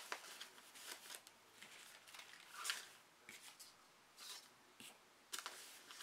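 Faint rustling of a cotton drawstring bag as it is handled and packed, in short scratchy bursts a second or two apart.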